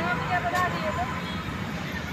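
Faint, indistinct voices of people talking in the first second, over a steady background hum.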